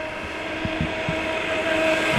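HoBao Hyper MT Sport Plus RC monster truck running flat out on a 4S LiPo: the brushless motor and drivetrain give a steady whine over a rushing noise that grows louder as the truck approaches. A few faint knocks come about a second in.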